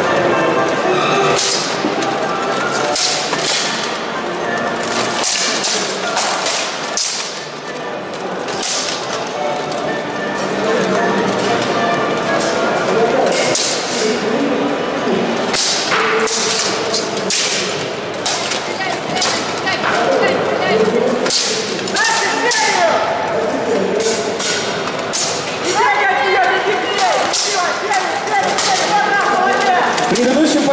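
Steel longswords clashing and striking plate armour in a full-contact armoured bout: irregular sharp clanks and thuds, some in quick runs. They sound over the steady din of a large hall, with voices and music in it.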